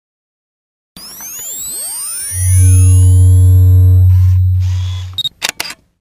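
Electronic intro sound effect: a tangle of rising and falling synthesized sweeps, then a loud, deep steady bass tone with higher steady tones above it for about two and a half seconds, fading out and ending in a few quick sharp clicks.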